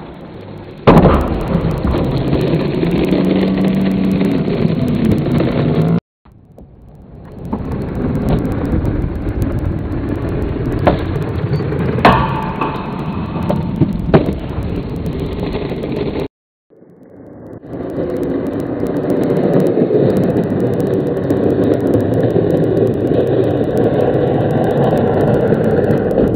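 Skateboard wheels rolling on concrete, a steady low rumble, with a few sharp clacks of the board on the ledge and ground, the loudest about twelve seconds in. The rumble breaks off into silence twice, briefly.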